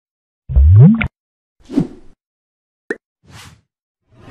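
Animated title-intro sound effects: a loud synthetic bloop that glides upward in pitch, then a whoosh, a sharp click and a fainter whoosh.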